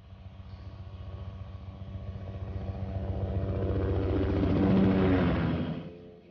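An engine drone with a fast, even pulse, growing steadily louder to a peak about five seconds in, then cut off sharply.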